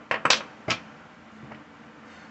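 Tarot deck being handled in the hands: a quick run of sharp card snaps and slaps, then one more just under a second in.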